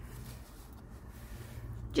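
Quiet rustling and sliding of paper and card as the pages and a pocket of a handmade paper journal are handled, over a low steady hum.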